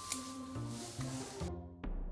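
Music: a short run of low notes over a hissy background, which drops away about one and a half seconds in. Cleaner music follows, with a sharp hit near the end.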